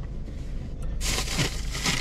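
Takeout food bag rustling and crinkling as it is handled, starting about a second in, over a low steady hum.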